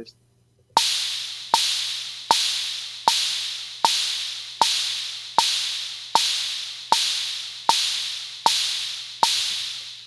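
Drum-machine open hi-hat and bongo sounding together on every quarter-note beat at 78 bpm, twelve even strokes starting under a second in, each hi-hat sizzle fading out by the next stroke. The hi-hat has been turned down a little so that it sits level with the bongo.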